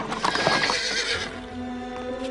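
A carriage horse whinnying with a clatter of hooves in the first second or so, over background music.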